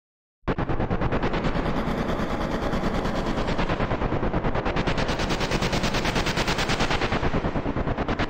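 Machine-gun sound effect: rapid automatic gunfire in a fast, even stream of shots that starts abruptly about half a second in and keeps going.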